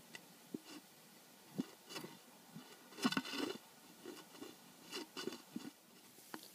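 Faint, irregular clicks, taps and light scrapes from a hollow-handled hatchet being handled, with the busiest stretch about halfway through and again near the end.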